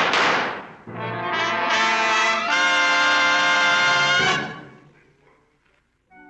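A gunshot sound effect at the start, followed by a brass orchestral sting: trumpets and trombones hold a loud chord that steps up about two and a half seconds in, then fades away by about five seconds.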